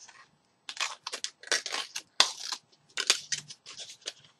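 A small paper envelope being handled and opened by hand: a run of short paper rustles and crinkles that starts about half a second in.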